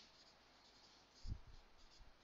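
Faint strokes of a marker pen writing on a whiteboard, with a single dull low thump a little past halfway.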